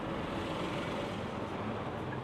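Steady city street ambience: a low, even wash of distant road traffic.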